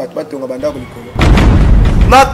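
A man talking, then, just past a second in, a sudden loud, distorted rush of noise with a heavy low end that overloads the recording.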